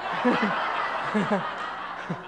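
An audience laughing together: a broad wash of many people's laughter, with a few separate chuckles standing out.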